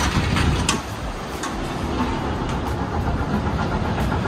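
Steady rumble of city traffic heard from high above the street, a continuous low noise with no single vehicle standing out.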